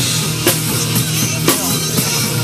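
Acoustic drum kit played live along with a rock backing track: snare, bass drum and cymbal strokes, with sharp accents at the start, about half a second in and again about a second and a half in.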